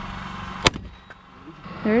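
A hammer-activated powder-actuated nailer fires once, about two-thirds of a second in: the hammer blow sets off a .22-calibre powder load with a single sharp crack, driving a nail through a wood stud into the concrete wall. A steady low hum runs underneath.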